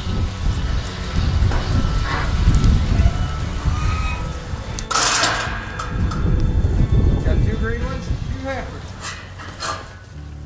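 Rain, with a heavy gusty rumble on the microphone and a short noisy burst about halfway through. A few brief wavering calls come in the last few seconds.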